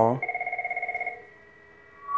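Cisco IP desk phone giving a short trilled ring, a warbling tone at several pitches lasting about a second, as an intercom call comes in and the phone auto-answers it.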